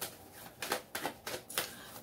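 Tarot cards being shuffled by hand: an irregular run of light, quick card clicks and flicks.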